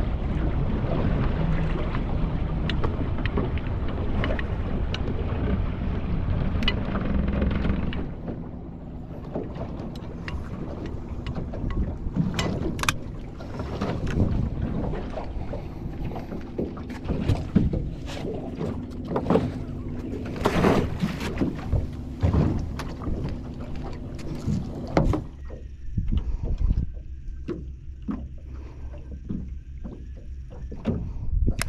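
Small fishing boat's engine running under way, then throttled back to a lower idle about eight seconds in. Scattered knocks and clatter sound over the idling engine through the middle of the stretch.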